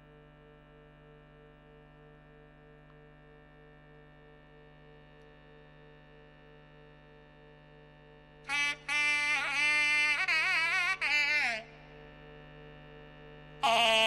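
A steady reedy drone holds for several seconds, then about two-thirds of the way in a nadaswaram enters with a loud melodic phrase full of pitch bends and slides for about three seconds, falls silent over the drone, and starts again near the end.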